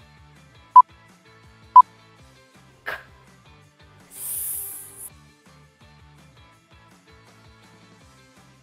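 Countdown timer beeps: short, loud single tones one second apart, the last about two seconds in. A brief airy hiss follows about four seconds in, over faint background music.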